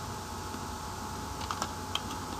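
Computer keyboard typing: a few light keystrokes in the second half, over a steady faint electrical hum.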